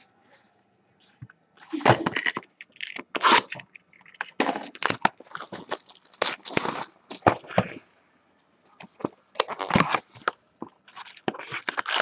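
Hands handling and opening a cardboard Bowman baseball card box: irregular bursts of crackling, crunching and scraping of cardboard and wrapper, with short pauses between them.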